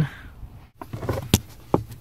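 Light handling noise with a few sharp clicks and knocks, the clearest two in the second half, as a wire is worked through the firewall.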